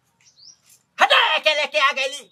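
A faint, brief high chirp of a small bird, then from about a second in a loud, high-pitched human voice speaking or calling out.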